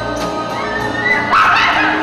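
Live band music with sustained backing vocals and a steady cymbal tick about four times a second. About one and a half seconds in, a loud high-pitched voice cries out over it.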